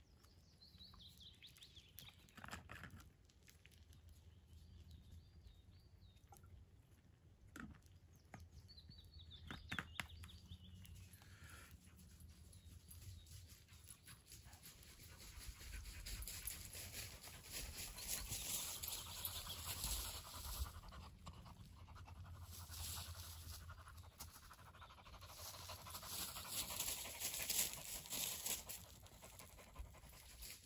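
A dog panting close by, growing louder and more rhythmic from about halfway through. A bird calls twice in the first part.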